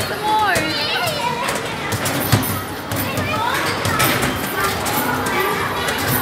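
Busy arcade hall: children's voices and chatter over a steady din, with knocks of balls thrown at an arcade basketball game, one sharp knock about two seconds in.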